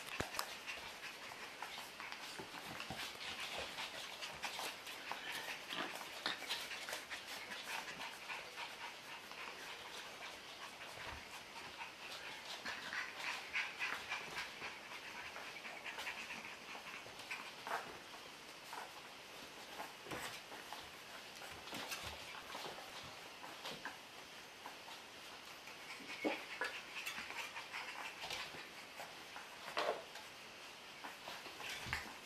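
Four-week-old puppies moving about on a tile floor: a steady patter of small claw clicks and scuffs, with faint puppy whimpers and panting among them.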